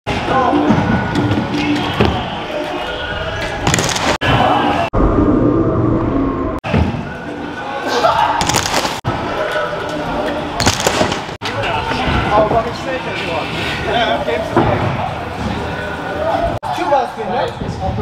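Stunt scooter wheels rolling on wooden skate-park ramps, with sharp slams from landings and impacts a few times, against voices and music in a large hall.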